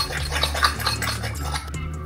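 Metal spoon whisking oat-flour batter in a ceramic bowl: a quick run of clicks and scrapes against the bowl that eases off near the end.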